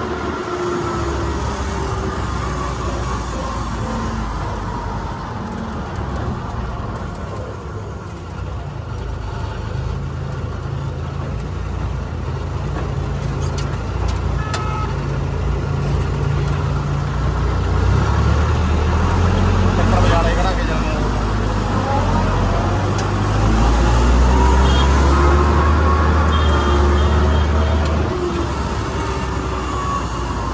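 Combine harvester's diesel engine running steadily as it is driven along a road, with road and traffic noise around it. The engine note swells louder twice in the second half.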